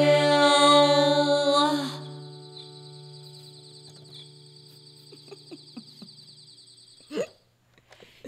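The final held sung note of an improvised song over acoustic guitar and small electronic keyboard, stopping about two seconds in. The chord and a thin high keyboard tone then linger faintly for several seconds, with a short sliding vocal sound near the end before it goes quiet.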